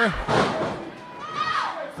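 A single heavy thud in the wrestling ring at the start, followed by a drawn-out cry that falls in pitch.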